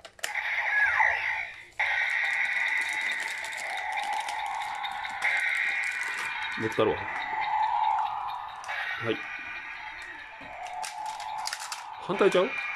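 Electronic sound effects and a looping standby tune from the small speaker of a Kamen Rider Zi-O Ziku-Driver toy transformation belt, with a Kuuga Ridewatch set in it. A few plastic clicks come as the belt is handled and turned.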